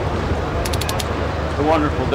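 Steady low rumble of outdoor background noise, with a quick run of four faint high clicks a little under a second in; a man starts talking near the end.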